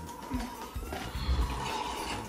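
A drink being slurped through a plastic drinking straw, a wet sucking sound.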